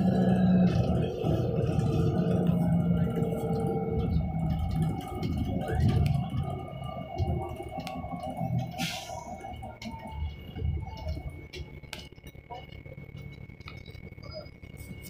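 Van Hool A300L transit bus with a Cummins ISL diesel, heard from inside the cabin, its engine drone strong for the first several seconds, then fading about halfway through to a quieter run with a thin steady high whine and small rattles.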